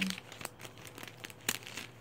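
Paper and plastic sticker packaging crinkling and rustling as it is handled, in short irregular crackles with a sharper one about one and a half seconds in.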